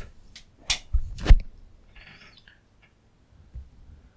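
A room light being switched off: two sharp clicks in the first second and a half, the second with a dull thump, then faint rustling and a few small ticks.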